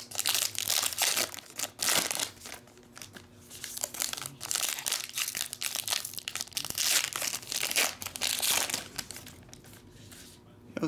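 Foil trading-card pack wrapper crinkling and being torn open by hand, in several bursts of crackling with a lull about three seconds in.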